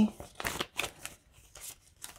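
Canadian polymer banknotes being handled and sorted in the hands, a series of crisp flicks and crinkles as the plastic bills are separated.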